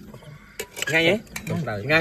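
Metal spoon clinking and scraping against a ceramic plate of rice, a few sharp clicks.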